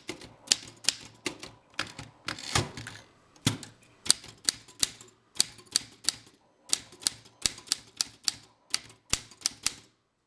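Manual typewriter being typed on: type bars strike the paper in quick runs of sharp clicks, with short pauses between words. A longer rattle a little over two seconds in comes as the carriage is returned to a new line.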